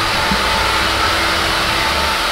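Hair dryer blowing steadily on a customer's hair in a salon, a loud even rush of air with a faint steady motor hum.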